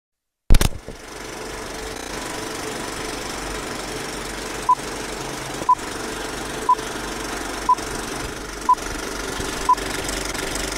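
Film-leader countdown sound effect: a film projector running steadily after a sharp click at the start, with a short high beep once a second, six beeps from about halfway through.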